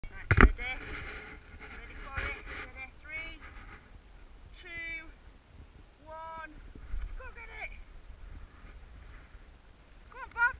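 Dogs whining: a series of short, high-pitched cries that glide up and down in pitch, four or five times. There is a loud knock on the microphone about half a second in.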